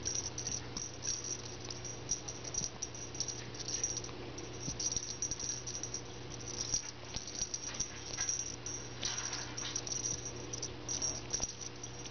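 Kittens pawing and scampering on carpet: scattered light scuffs and soft taps over a steady low hum.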